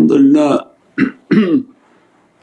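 A man's voice making three short wordless vocal sounds: the first, about half a second long, starts right away, and two brief ones follow about a second in.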